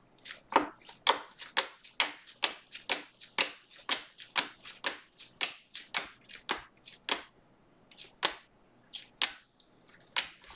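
Panini Mosaic football trading cards being flipped off a hand-held stack one at a time, each card giving a short sharp flick, about two to three a second, slowing to a few spaced flicks near the end.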